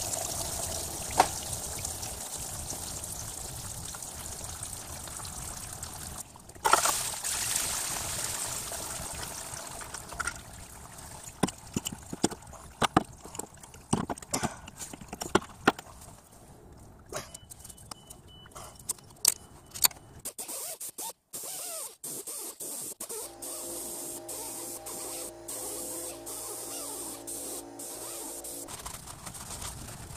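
Engine coolant draining and trickling out as the water pump's seal on a Toyota 3MZ-FE V6 is broken, with scattered clicks and knocks of tools on metal. Near the end a steady hum of several tones sounds for about five seconds.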